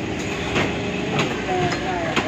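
Heavy fish-cutting knife knocking and scraping on a wooden chopping block a few times, over a steady din of background voices.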